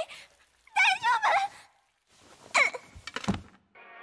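Anime soundtrack: a girl's high, wavering cry without words about a second in and a falling vocal sound near the middle, then a few thuds of impact. Sustained music chords come in just before the end.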